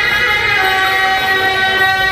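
Beiguan processional music: suona shawms holding steady, reedy notes.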